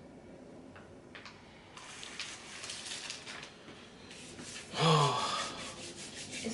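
Quiet handling and rustling noises at the table, then a short breathy vocal sound about five seconds in, the loudest thing heard.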